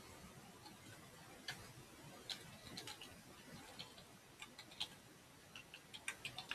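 Near silence with a few faint, scattered clicks, about seven over the six seconds, from someone working at a computer.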